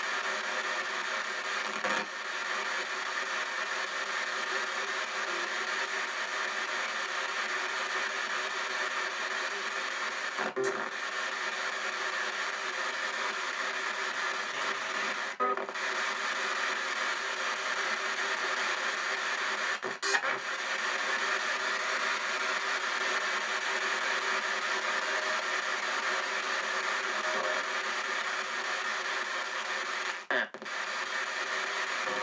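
P-SB7 spirit box in reverse sweep through stereo speakers: a steady hiss of radio static with chopped station fragments. It is broken by a few brief drop-outs or clicks, and a cough comes about ten seconds in.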